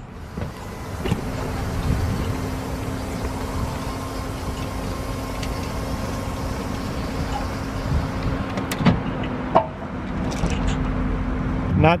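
Electric slide-out mechanism of a fifth-wheel RV running with a steady motor hum as the slide retracts. It starts about a second in and stops just before the end, with two short clicks near the end.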